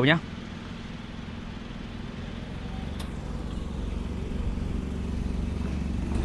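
Low, steady engine rumble of a motor vehicle, growing gradually louder through the second half.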